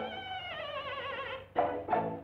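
A long, wavering cry that slides down in pitch for about a second and a half, from the cartoon's soundtrack. It is followed near the end by two short, loud hits.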